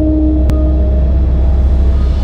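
Channel-ident sound design under an animated logo: a deep, steady rumble with low sustained tones, and a sharp click about half a second in.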